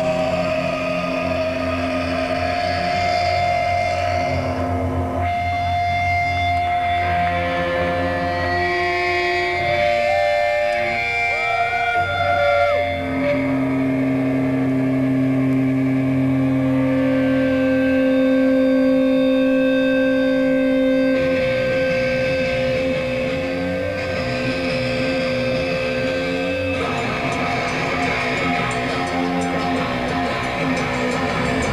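Live metal band's electric guitars holding long sustained notes that change every few seconds, with a pitch bend sliding up and down about ten to thirteen seconds in. No singing.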